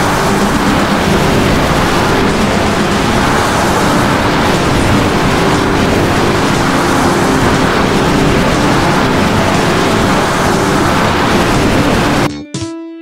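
A loud, steady rushing noise effect with faint held tones underneath.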